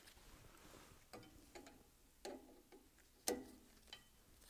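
A few faint metallic clicks and taps of a hex key against the bolts of a pump's shaft coupling as they are tightened, the sharpest about three seconds in, over near-quiet room tone.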